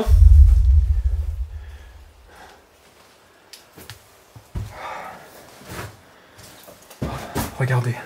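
A deep low boom that hits suddenly and dies away over about two seconds, followed by quieter voice sounds.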